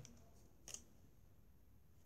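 Near silence, with one brief faint click about two-thirds of a second in from handling a small spiral-bound paper notepad.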